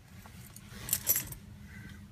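A bunch of car keys jingling briefly, about a second in, as the keys are readied to start the car.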